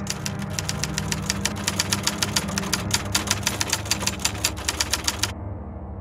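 Typewriter keys clacking rapidly and evenly, stopping about five seconds in, with a low steady hum underneath.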